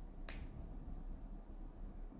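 A single short click about a quarter of a second in, over a faint low hum.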